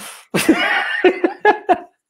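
A man laughing heartily: a breathy outburst of laughter about half a second in, then quick rhythmic 'ha-ha' pulses, about five a second.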